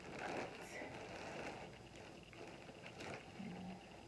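Rustling and crinkling of paper and plastic packaging as an instruction manual is handled, with a few light clicks about three seconds in.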